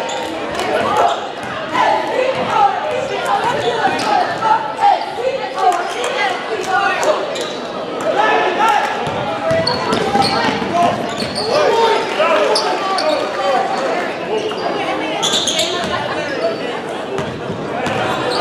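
A basketball being dribbled on a gym floor under steady crowd chatter, with short high sneaker squeaks, all echoing in a large gym.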